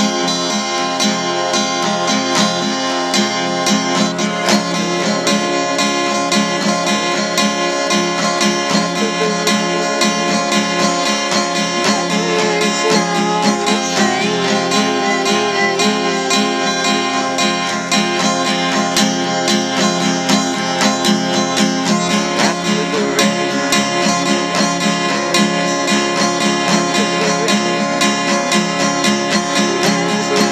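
Acoustic guitar with a capo, strummed in a steady, even rhythm.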